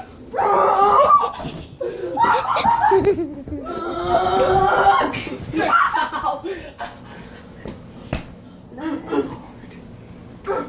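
Laughter and wordless excited vocalizing during rough play-wrestling, loudest in the first half and dying down after about six seconds, with one sharp smack about eight seconds in.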